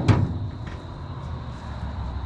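A sharp clunk as the steel hood of a 1952 Chevy truck is swung open, followed by a fainter knock under a second later, over steady low background noise.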